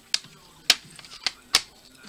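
Plastic CD jewel case being snapped shut and handled on a wooden table: four sharp clicks, the loudest about two-thirds of a second in and near the end.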